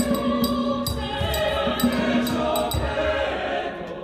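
Mixed choir singing, accompanied by sharp rhythmic percussion hits a few times a second. The percussion stops about three seconds in, and the singing fades near the end.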